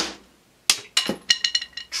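Drumstick striking a rubber practice pad on a snare drum: one stroke stopped dead, then after a short pause a quick run of about eight lighter taps with a faint ring. It is a faked bounce, the stroke halted and then a rebound imitated, not a stick rebounding freely off the pad.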